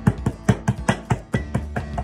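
Hands repeatedly patting soft gluten-free bread dough flat on a floured board, short slaps about five a second, over background music.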